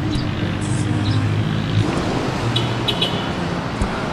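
Road traffic noise with a vehicle engine humming steadily, and a couple of short bird chirps about three quarters of the way through.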